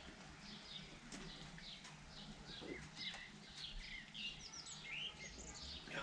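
Small birds chirping faintly in the background, a run of many short, high chirps and twitters, over a faint steady low hum.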